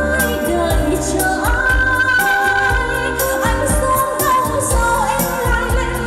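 A woman singing into a handheld microphone over backing music with a steady beat, holding long notes.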